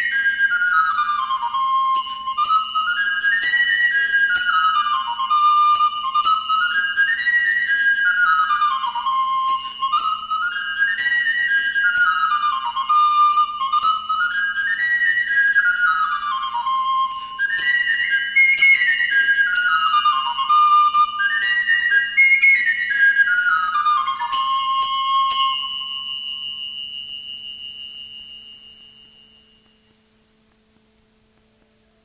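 Baroque chamber music: a flute plays repeated quick descending runs over steady harpsichord plucks, with a high note held above. About 26 s in the piece ends, and the last note fades to near silence over a faint low hum.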